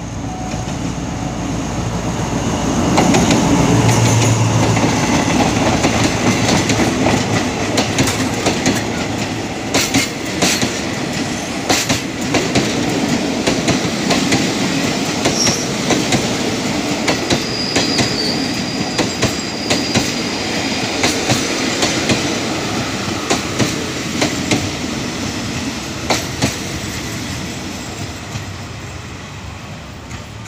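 A diesel-electric locomotive (SRT AHK class) passes close by with its engine running, loudest a few seconds in. Its passenger coaches follow with a steady rumble and a repeated clickety-clack of wheels over rail joints, fading near the end as the last coach goes by.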